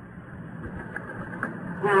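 A short pause in a man's speech, filled only by the faint steady hum and hiss of the recording; his voice comes back near the end.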